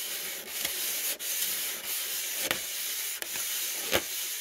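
Close-up rubbing and scratching made by fingers working right at the phone's microphone: a steady hiss with a few sharp clicks.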